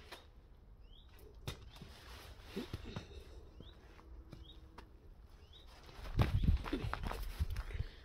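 Footsteps on a gravel and dirt track, with a few faint short bird chirps. About six seconds in come louder low thuds and rumbling as the walker jumps down, jolting the handheld camera's microphone.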